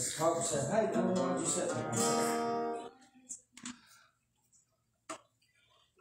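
Acoustic guitar strummed, a chord ringing out and stopping about three seconds in, followed by a few soft knocks and clicks.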